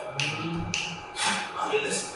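A man's voice in a soft, hushed stretch of a spoken-word delivery, with three short hissing breaths or sibilants about half a second apart.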